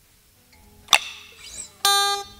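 Electric guitar being handled and then played: a sharp click about a second in, then a bright plucked note near the end that rings on.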